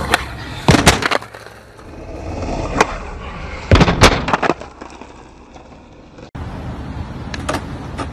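Skateboard wheels rolling on pavement, broken by sharp clacks of the board striking the ground. The loudest clatter comes around the middle, as the rider bails and the board lands away from him. Near the end, after a sudden cut, another board rolls with a couple more clacks.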